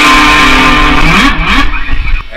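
Electric guitar playing held notes, then a note that glides up and down in pitch about a second in before the playing fades out near the end.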